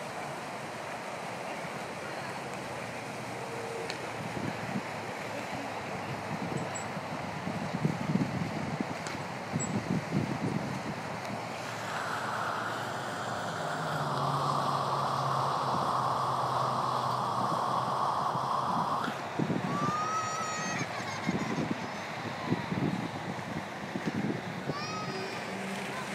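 Amusement-park swing ride in operation: its machinery gives a steady hum for several seconds in the middle. Toward the end come a few short, high rising-and-falling screams from the riders.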